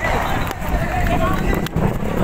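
People shouting and yelling over each other, with a low rumble of handling noise from a phone moving fast.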